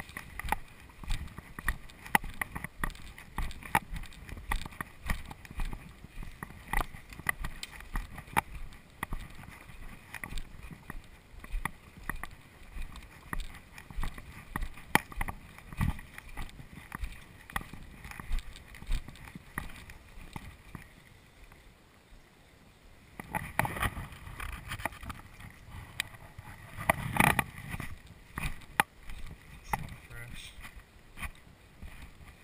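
Footsteps on a muddy trail and the swish of grass and brush against legs and gear as a person walks through overgrown vegetation, with irregular small clicks and knocks. A louder rushing noise comes in about three-quarters of the way through.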